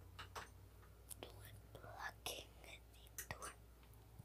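A girl whispering close to the microphone, breathy and hissy, over a faint steady low hum.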